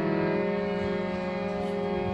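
Harmonium holding a sustained chord of reedy tones, steady with a slight change of notes partway through.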